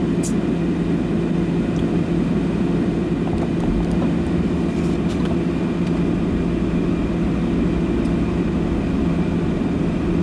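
Steady running noise of a car heard from inside the cabin while driving: engine and tyre hum with a constant low drone.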